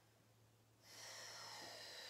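A person's long, audible breath, starting about a second in after near silence and running steadily on.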